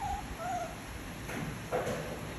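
Baby monkey giving two short, soft coo calls in quick succession, followed by two brief noisy sounds in the second half, the last one the loudest.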